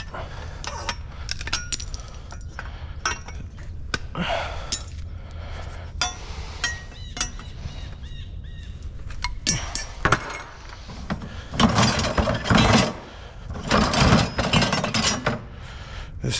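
Copper pipe being cut with long-handled cutters: scattered sharp snips and metal clinks. Two longer bursts of rattling scrap metal come in the last third.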